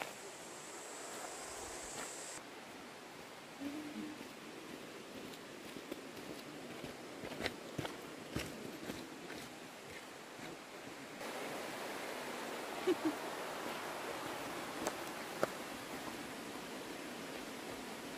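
Steady rushing outdoor background noise with scattered footsteps and twig crunches on dry leaf litter and gravel. The rushing gets suddenly louder about eleven seconds in.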